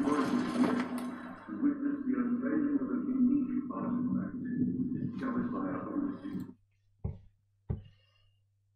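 Website audio of a voice reciting from the Necronomicon over music, holding a steady pitch, which cuts off about six and a half seconds in. Two short, soft low thumps follow near the end.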